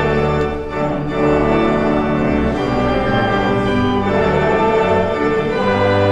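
Organ music: slow, held chords that change about once a second.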